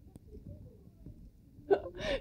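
Quiet room tone with a faint single click just after the start, then a woman's voice begins near the end.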